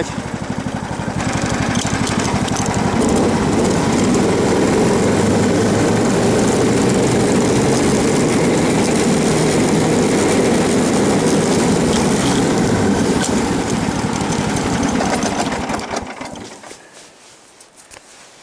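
Snowmobile engine running steadily under way, picking up in the first couple of seconds, then dying down near the end as the machine slows to a stop.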